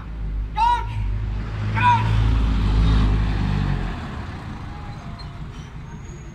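A motor vehicle driving past close by on the street, its engine rumble and tyre noise building to a peak about two to three seconds in, then fading away by four seconds.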